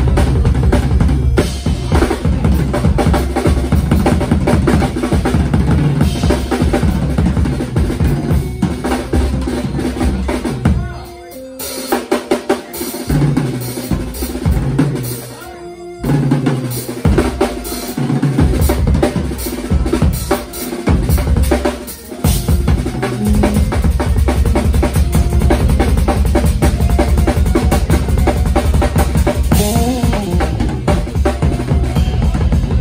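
Drum kit played live with a band, a dense busy pattern of drum and cymbal hits. Around the middle it thins to a few short separate hits for several seconds before the full playing returns.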